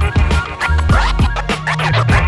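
A DJ scratching a vinyl record by hand on a turntable over a beat with deep bass, the scratches sweeping quickly up and down in pitch several times a second.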